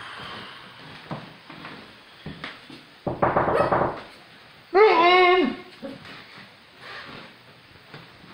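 Small Chihuahua-type dog growling: a short rasping growl about three seconds in, then a drawn-out bark-like call that bends in pitch about a second later.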